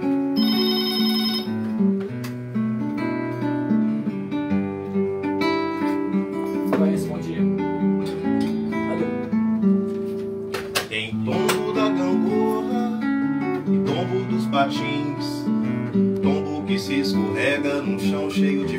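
Acoustic guitar playing the intro to a song, picked and strummed notes in a steady rhythm. A brief high electronic tone sounds over it near the start.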